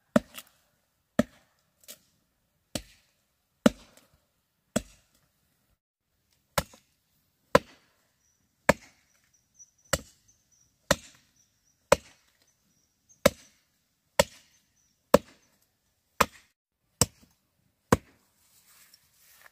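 A machete chopping into a wooden trunk near its base: sharp, separate blows about once a second, with one short pause early on.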